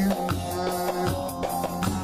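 A Turkish folk dance tune (oyun havası) played live on a bağlama, a long-necked plucked lute, with a hand drum beating a steady rhythm.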